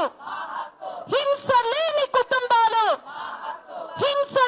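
A woman shouting a slogan in long, held, high-pitched phrases from about a second in, as at a protest. Quieter crowd noise fills the gaps before and after her.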